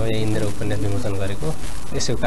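Speech: a voice talking, with a steady low hum underneath.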